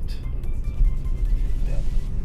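Steady low rumble of a car's engine and tyres heard from inside the cabin while driving, with faint music underneath.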